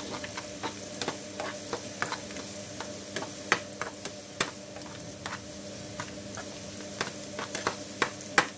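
Chopped garlic frying in olive oil in a small pan, a steady sizzle broken by many irregular clicks and pops as a metal skimmer stirs and scrapes it; the garlic is being browned to golden without burning. A faint steady hum runs underneath.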